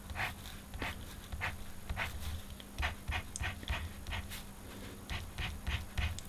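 Uni Posca paint marker's tip scraping on black paper in short, quick hatching strokes, irregular, a few strokes a second, with a faint steady hum underneath.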